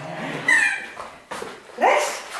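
A dog whining and yipping in excitement: a high falling whine about half a second in, then a short yip near the end.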